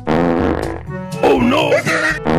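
A wet fart sound effect, buzzy and loud, for about the first second, then a wavering voice clip going "oh no", over background music.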